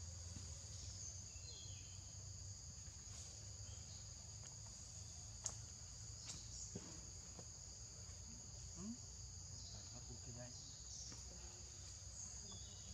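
Steady, faint chorus of insects chirring outdoors in two high, even tones, over a low rumble. A single sharp click about five and a half seconds in.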